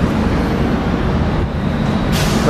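Steady rumble of street traffic on a busy city boulevard.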